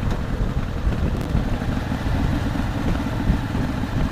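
Harley-Davidson Fat Boy's V-twin engine running at steady road speed, a low even rumble with no shifts or revving.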